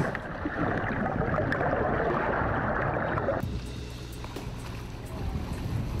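Water churning and splashing at the surface as white sharks go for the bait, a dense rushing noise that stops abruptly about three and a half seconds in, leaving a quieter low rumble. A background music bed runs underneath.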